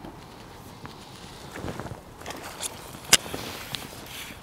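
A hooked ghost carp splashing at the surface as it is drawn to the landing net, with soft splashes in the middle and one sharp click a little after three seconds.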